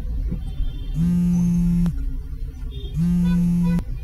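Mobile phone ringing: two steady buzzy tones, each just under a second long and about two seconds apart, over the low rumble of a car's cabin.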